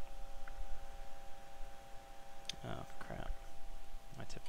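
A steady faint electrical whine with a few light clicks, and two brief mumbled vocal sounds from a person about two and a half to three seconds in.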